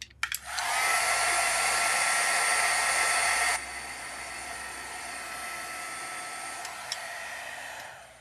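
Handheld craft heat tool blowing hot air to dry wet watercolor paint on the paper. Its whine rises as it starts, drops to a quieter level about three and a half seconds in, and cuts off just before the end.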